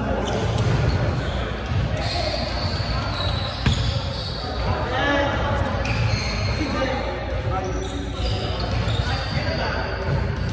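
Volleyballs being hit and bouncing on a hardwood gym floor, echoing in a large hall, with players' voices in the background. One sharp smack comes a little under four seconds in.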